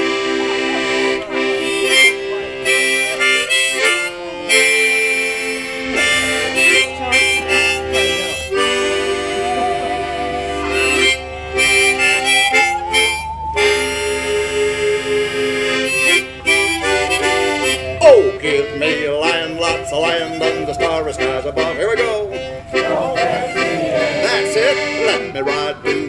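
Piano accordion and harmonica played together by one player, an instrumental lead-in with steady held chords. From about six seconds in a bowed musical saw carries a wavering, sliding melody above them, with a quick downward swoop near the middle.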